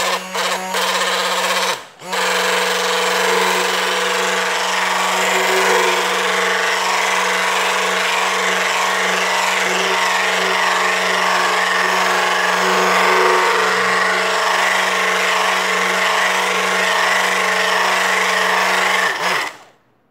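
Electric drill with a spiral mixing paddle running steadily in thick soap batter of oil, lye and aloe vera. It stops briefly about two seconds in, starts again, and cuts off just before the end.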